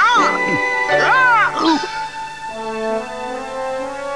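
A cartoon character's voice gives two short cries, one at the start and one about a second in, each rising and then falling in pitch. Background music with held notes follows.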